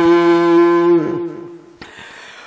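A man's chanting voice, amplified through microphones, holding one long steady note in the sung style of a Bangla waz, then breaking off about a second in and dying away in the hall's echo.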